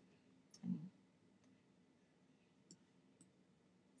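Near silence with a few faint computer mouse clicks spread through it, and a brief low vocal sound just under a second in.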